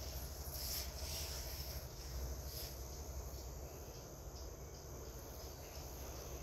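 Insects chirring steadily in a high, continuous band, over a low rumble.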